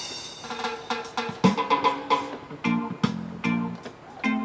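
Portable electronic keyboard played: chords and a melody over a drum beat, starting abruptly.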